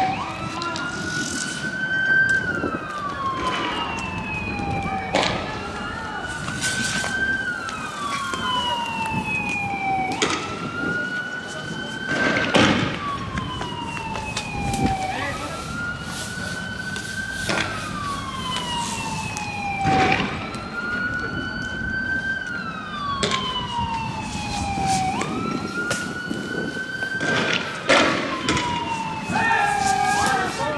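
Police vehicle siren wailing: a slow rise, a short hold, then a long fall, repeating about every five seconds. Sharp bangs of riot-police gunfire cut through it about a dozen times, the loudest near the middle and near the end.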